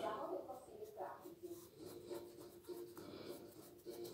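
Light scratching and rubbing close to the microphone, over faint voices.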